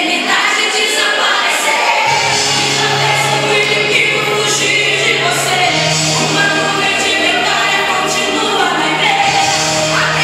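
A Christian gospel song with sung vocals. A low, sustained bass line comes in about two seconds in.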